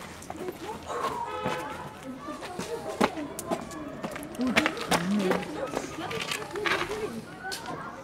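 Indistinct boys' voices talking and calling, with several sharp clicks and knocks scattered through.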